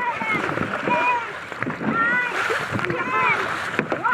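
Dragon boat paddles splashing through choppy water with each stroke, under repeated short, high-pitched shouts from the crew.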